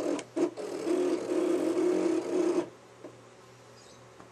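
Cricut electronic cutting machine's motors running in a pulsing whir as it moves the blade and mat to cut circles from cardstock, then stopping abruptly about two-thirds of the way through as the cut finishes.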